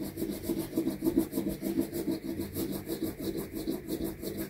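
A crayon rubbing over a paper cutout in quick, rhythmic back-and-forth coloring strokes, a steady scratchy scribbling.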